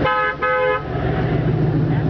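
Car horn honked twice in quick succession, two short honks of the same pitch in the first second, over the low steady rumble of the car's engine running.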